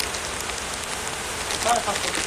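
Steady hissing background noise, with a brief bit of a woman's voice near the end.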